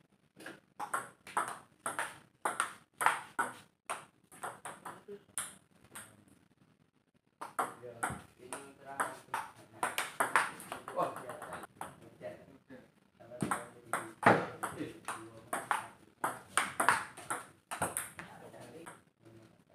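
Table tennis ball clicking off the players' paddles and the table in fast rallies, a quick, even run of sharp ticks that breaks off for about a second some six seconds in, then starts again.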